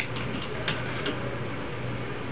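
Tin foil being pinned into the hair with bobby pins: a handful of short, sharp clicks in the first second or so, over a steady low hum.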